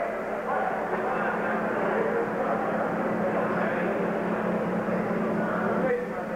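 Steady hubbub of indistinct voices from an arena crowd at a boxing match, over a constant low hum.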